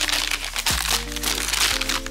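Plastic snack wrapper and shopping bag crinkling and rustling as the pack is pulled out and handled, heaviest in the first second and a half. Background music with steady low notes runs underneath.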